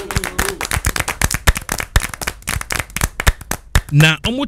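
A rapid, uneven run of sharp claps or knocks, several a second.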